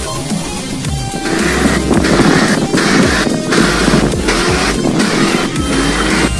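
Electronic dance music with a heavy beat, getting louder and fuller about a second in.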